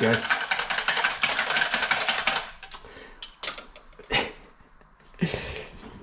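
A wire whisk beating salt-and-Tabasco brine in a plastic jug: a fast run of even clicking strokes that stops about two and a half seconds in. It is followed by a few light knocks and a dull thud as the utensils are put down.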